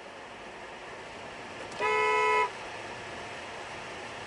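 A car horn sounds once, a steady single blast of about two-thirds of a second near the middle, heard from inside the car's cabin over a steady low road and cabin hum.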